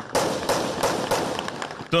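Gunfire in a street: a run of sharp, irregular cracks, several a second, over loud street noise.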